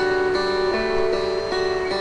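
Guitar accompaniment between sung lines: plucked notes and chords ringing on, with a new note sounding about every half second.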